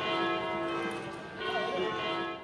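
Church bells ringing: the rich ringing of one stroke fades, and a new stroke comes about one and a half seconds in and rings on.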